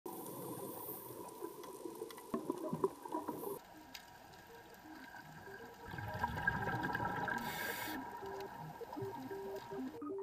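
Underwater reef ambience recorded on a diving camera: scattered sharp clicks and crackles, then from about six seconds in a scuba diver's exhalation through the regulator, a low bubbling rumble with a hissy burst. Faint music notes come in under it.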